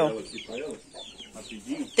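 Young chicks peeping in a flock: a scatter of short, high, falling chirps, with a couple of soft low clucks among them.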